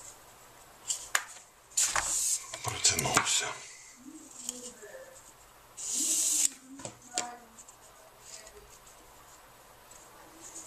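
Paracord being pulled through a braided paracord bracelet with a steel surgical clamp: rustling, scraping slides of the nylon cord through the weave, loudest about two and six seconds in, with several sharp metallic clicks from the clamp.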